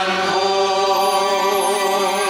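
Mixed church choir of women's and men's voices singing a long held chord with vibrato.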